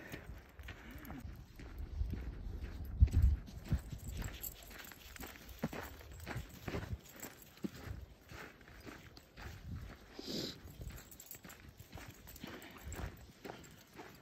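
Footsteps of a person walking on a dirt trail patched with snow: an irregular series of steps, with the loudest, low thumps about three seconds in.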